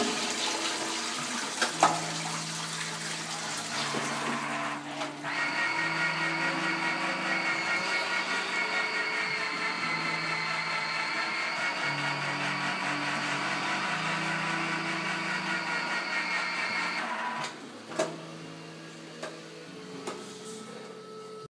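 Toilet flushing: a rush of water, then about five seconds in the cistern's fill valve starts a steady high whistling hiss as the tank refills, cutting off a few seconds before the end, followed by a single click.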